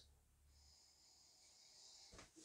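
Near silence with a faint, drawn-out sniff: a man breathing in through his nose over a glass of imperial stout to smell it.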